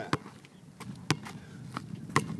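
Basketball dribbled on an outdoor asphalt court: four sharp bounces at an uneven pace.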